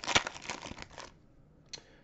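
Foil trading-card pack wrapper crinkling as it is torn open, for about a second, then stopping; one short crinkle near the end.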